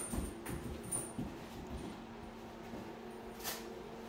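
Light clicks and taps of a young German shepherd's claws and paws on a hardwood floor as it moves around the man and sits, several in the first second or so and one more near the end, over a faint steady hum.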